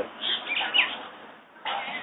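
A few short, high chirps, like a small bird's, with quick sweeping pitch, heard in the first second over a man's brief speech.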